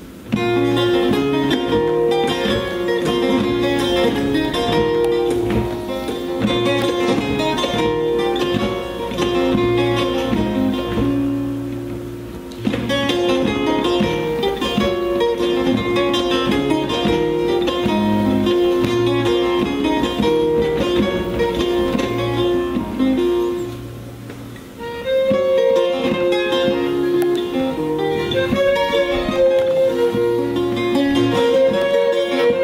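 Live trio of accordion, violin and long-necked plucked lute playing together, with the plucked lute prominent. The music starts just after the opening and eases off briefly twice, about twelve seconds in and again around twenty-four seconds in, before picking up again.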